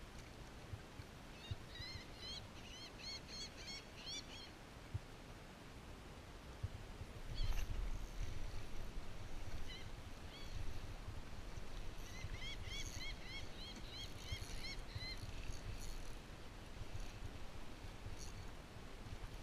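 A bird calling in two runs of short, piping chirps, about four a second, each run lasting about three seconds, over a low background rumble that grows louder about halfway through.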